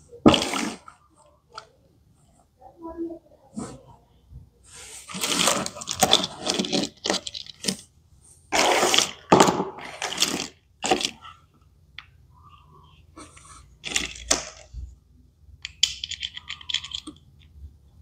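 Small hard plastic toy accessories clattering and clicking against each other as they are picked through and handled, in several short bursts with quiet gaps between.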